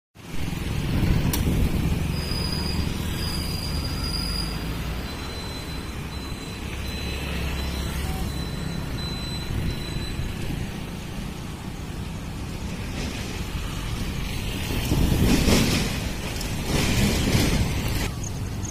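Roadside outdoor ambience: a steady low rumble of traffic, with two vehicles passing louder near the end.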